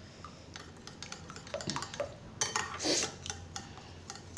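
A steel spoon stirring a thick curd-and-coconut mixture in a glass bowl: soft wet scraping with scattered light clinks of the spoon against the glass, a few louder ones between about one and a half and three seconds in.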